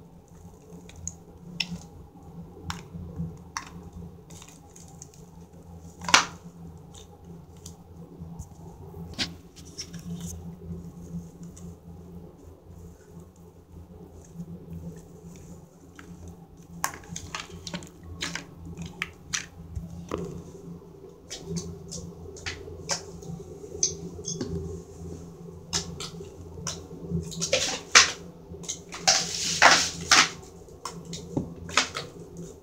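Hands squishing, poking and pulling a glittery rose gold slime, giving scattered sticky clicks and pops that grow thicker and louder near the end, over a steady low hum.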